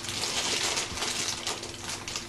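Crinkling and rustling of a blind-box figure's packaging being opened by hand: a quick, irregular run of small crackles.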